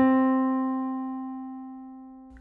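A single keyboard note, the first degree (tonic) of the scale, struck once and left to ring, fading slowly and evenly.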